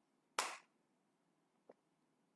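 A man drinking water from a glass: one short, sharp sip about half a second in, then a faint click near the end.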